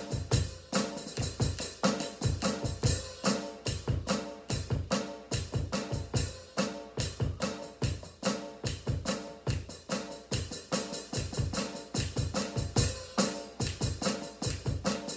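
Electronic drum kit played with sticks in a steady, fast groove of many strikes a second, with sustained pitched tones underneath.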